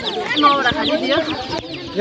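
Many young chicks peeping together, a dense chorus of short, high, falling chirps.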